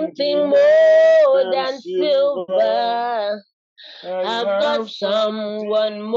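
A solo voice singing a gospel worship melody unaccompanied, in held, wavering phrases, with a short break about three and a half seconds in.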